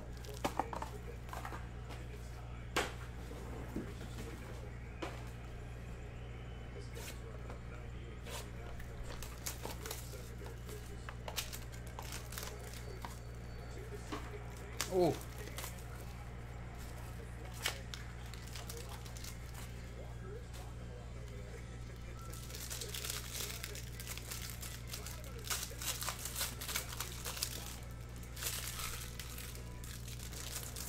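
Plastic wrapping of a baseball trading-card pack crinkling and tearing as the pack is opened by hand. Scattered light clicks of handling come first, then dense crinkling over the last eight seconds or so, over a steady low hum.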